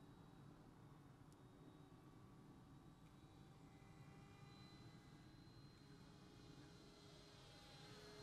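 Near silence with the faint, steady whine of a distant 90mm electric ducted-fan RC jet in flight, growing slightly louder toward the end.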